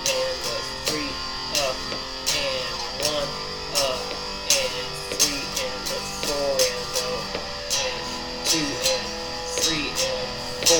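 Electric guitar played through an amplifier: a strummed and picked exercise in a swung, triplet rhythm, with sharp pick attacks and notes that slide in pitch.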